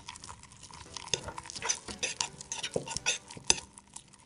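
A metal spoon stirring and scraping thickening glue slime around a ceramic bowl, with irregular clicks and scrapes of the spoon against the bowl.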